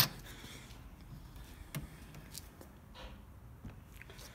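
A few faint clicks and light knocks of a small aluminium-framed windscreen being handled and folded down.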